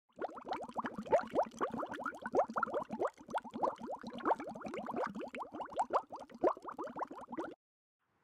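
Air bubbles rising through water, a dense bubbling made of many short rising blips, several a second, that cuts off suddenly near the end.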